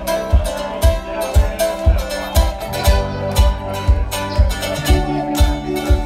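Live roots band on drum kit and guitars playing an upbeat song, with a steady kick drum about two beats a second under plucked strings.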